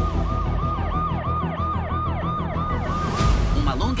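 Emergency vehicle siren in a fast yelp, its pitch rising and falling about three times a second over a steady low rumble. A brief swish sounds about three seconds in.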